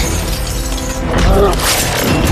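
Action sound effects of a shattering burst, with dramatic background music underneath.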